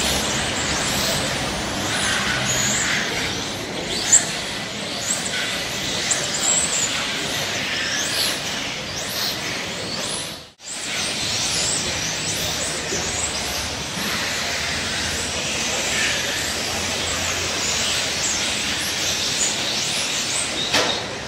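Several electric RC touring cars racing, their brushless motors whining in repeated short rising and falling sweeps as they accelerate and brake through the corners, over a steady hiss. The sound drops out for a moment about halfway through.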